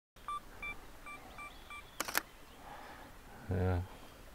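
Sony A7 camera beeping five times, short electronic beeps about a third of a second apart, then its shutter clicking once about two seconds in.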